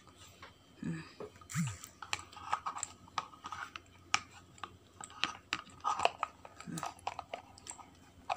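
Crunchy chewing of raw carrot: a string of short, crisp crunches and clicks, irregular and on and off throughout.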